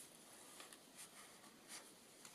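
Faint rustling of paper, a few brief scratchy rustles, as fingers handle a handmade paper tag in a paper junk journal.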